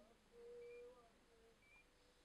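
Near silence, with a faint brief tone for about half a second near the start and a fainter one a little later.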